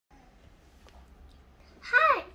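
Quiet room tone with a faint click, then a young girl's voice starts speaking near the end.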